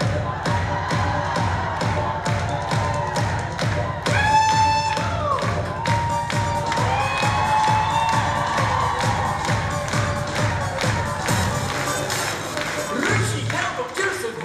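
Male vocal quartet singing a cappella in close harmony over a steady beat of about two and a half strokes a second, with one bright held note about four seconds in.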